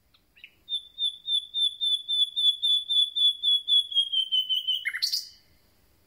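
Common nightingale singing one song phrase. A couple of short opening notes lead into a long, fast run of the same high whistled note, about seven a second, swelling in loudness and dropping slightly in pitch. The phrase ends in a short harsh note about five seconds in.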